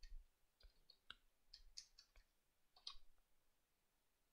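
Faint, irregular clicks of computer keyboard keys being typed.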